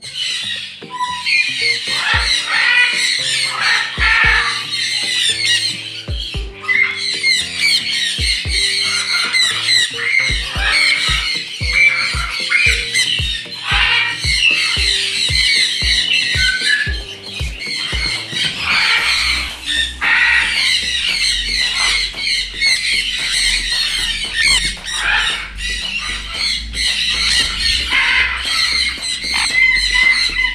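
A flock of parrots squawking and screeching continuously, many calls overlapping. Background music with a bass beat plays under it, the beat thumping about twice a second through the middle.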